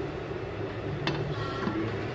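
Glass lid of an electric rice cooker clinking once against the pot about a second in, over a steady low hum.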